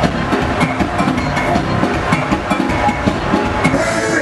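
Live soca band playing loud, with a steady drum beat and electric guitar.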